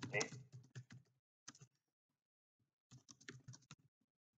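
Computer keyboard typing: a few scattered keystrokes about a second in, then a quick run of keystrokes near the end.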